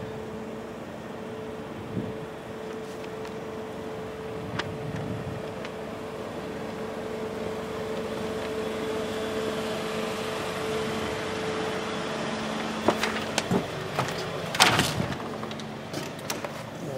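A steady mechanical hum with a held tone, fading out near the end. This is followed by a run of sharp clicks and knocks as the front door is unlocked and opened.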